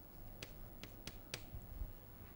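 Chalk clicking against a blackboard while a word is written: four sharp, faint taps, with a low thump near the end.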